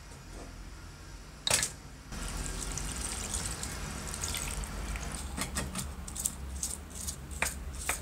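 A single knock, then liquid poured from a can splashing steadily into a tray over the aluminium housing covers of an electric hand plane, starting about two seconds in, with a few sharp ticks near the end.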